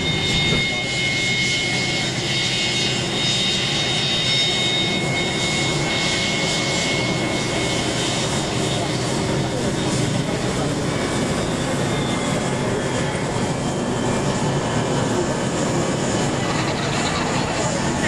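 Jet airliner's engines running as it taxis on the apron: a steady rush with a thin high whine in the first half that fades after about eight seconds.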